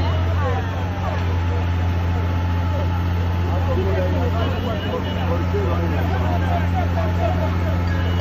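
Diesel engine of a DAF crane truck running steadily as a low drone while the crane lifts a car. Many voices of an onlooking crowd chatter over it.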